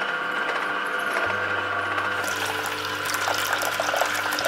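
Vertical slow juicer running steadily as it presses peeled oranges, a low hum joining about a second in. From about halfway there is a wet crackling as the fruit is crushed and juice runs out of the spout.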